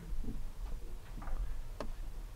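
A sharp click near the end, with a few fainter ticks before it, from a laptop key or mouse being pressed to step the game to the next move. Behind it runs a steady low room hum.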